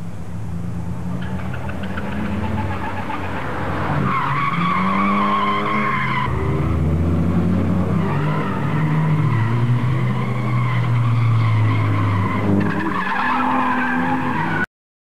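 Cars drifting through a bend: engines revving hard with their pitch rising, and tires squealing. The squeal is strongest about four to six seconds in and again near the end.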